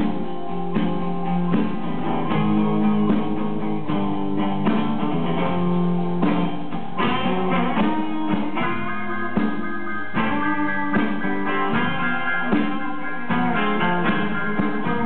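Live band playing a song, led by strummed acoustic guitar and electric guitar, with drums and an electric keyboard.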